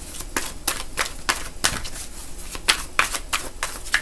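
A deck of tarot cards being shuffled by hand: a run of short card slaps and flicks, uneven, about three a second.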